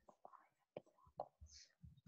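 Near silence with faint whispered speech.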